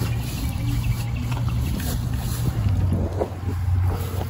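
Wind buffeting a phone microphone outdoors: a steady low rumble with no clear pitch.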